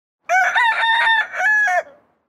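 A rooster crowing once, loud, a single crow lasting about a second and a half.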